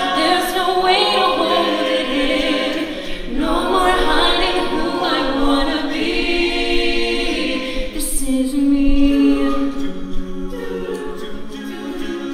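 An a cappella group singing a pop arrangement with voices only and no instruments: a female lead voice over the group's held backing harmonies.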